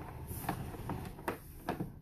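Sewer inspection camera push cable being pulled back through the drain line: a low rumble with a few soft, evenly spaced clicks.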